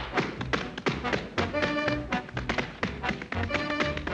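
Tap dancing on a concrete patio: rapid, rhythmic taps of the shoes over instrumental music, with held musical notes coming in about a second and a half in.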